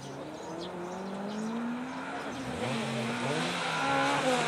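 Mitsubishi Mirage CJ4A gymkhana car's four-cylinder engine revving hard under acceleration, its pitch climbing. The pitch dips briefly about two and a half seconds in, then climbs again and grows louder near the end.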